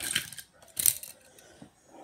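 Handling noise from small die-cast toy cars: a short rustle near the start and a sharp metallic clink a little under a second in, with a few faint clicks after.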